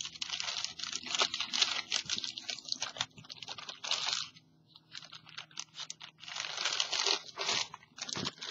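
Clear plastic bag crinkling and rustling as it is handled around paint bottles, in bursts with short lulls about halfway through.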